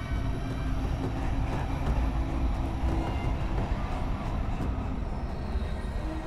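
A steady low rumble with a faint held tone above it: a cinematic sound-design rumble.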